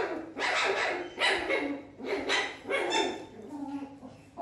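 A fennec fox giving about five sharp, yapping barks in quick succession, each under half a second, the last one weaker. They are the fox's food-guarding calls over a corn cob, warning the parrots off.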